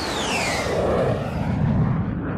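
Jet fly-past sound effect for a logo sting: a high whine that falls in pitch over the first half-second or so, over a rushing noise, with a low rumble that swells near the end.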